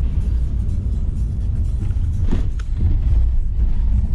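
Steady low rumble of a minibus engine and tyres on a rough unpaved road, heard from inside the cab.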